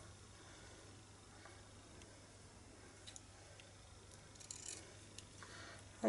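Faint, sparse snips and clicks of small scissors trimming a ribbon end, over a low steady hum.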